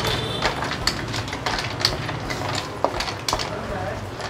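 Spotted babylon snail shells clattering against a metal wok and a wooden spatula scraping as they are stirred in sizzling butter, making many irregular sharp clicks over a steady hiss. A steady low rumble runs underneath.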